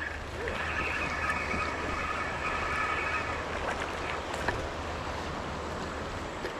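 Spinning reel being cranked to bring in a hooked bass, a steady whir for the first three seconds or so, over the steady rush of river water and wind on the microphone.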